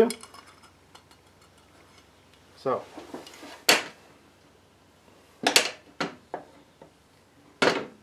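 Small steel gearbox parts of a Puch Z50 moped engine clinking together as they are handled during greasing and assembly: about five sharp metallic clinks, each with a short ring.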